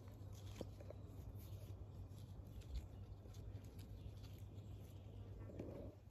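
Faint rustling of blueberry bush leaves and small ticks as ripe berries are picked off by hand, over a low steady hum.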